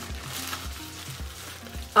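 Bubble wrap crinkling as it is pulled off an object by hand, over soft background music.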